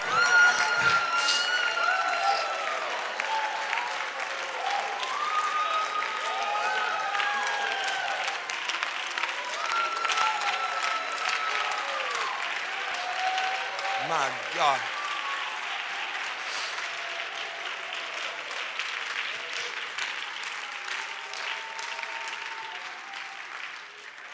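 Congregation clapping, with voices calling out over the clapping; it slowly dies down toward the end.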